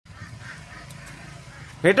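A man's loud, drawn-out exclamation near the end, his pitch rising and then falling, after a faint outdoor background.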